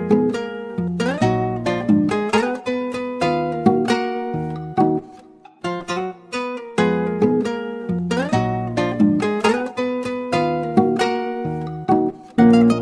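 Guitar-led instrumental music: plucked guitar notes, some sliding up in pitch, over a bass line. The level dips briefly about halfway through, and then the phrase starts over.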